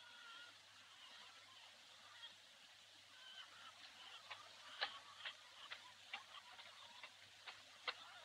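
Near silence, with a few faint short calls in the first half and faint irregular clicks, roughly two a second, from about four seconds in.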